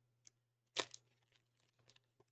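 Mostly quiet with a faint steady hum. About a second in, a short crinkle of a foil trading-card pack wrapper being handled, with a few faint clicks.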